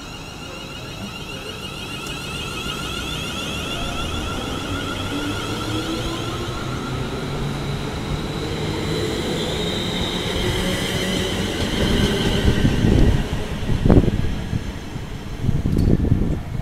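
London Midland Class 350 Desiro electric multiple unit departing, its traction drive giving a whine of several tones that rises slowly in pitch and grows louder as the train picks up speed. Loud irregular low buffeting follows in the last few seconds as the train clears the platform.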